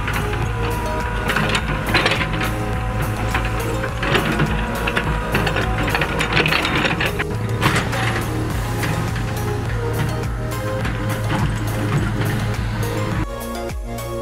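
Background music over a small tracked excavator running and clanking as it digs soil. Just before the end the machine sound drops away and only the music continues.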